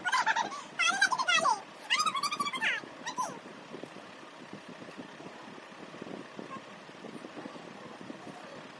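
High-pitched, wavering squeals of a girl's voice for about the first three seconds, then only faint background noise.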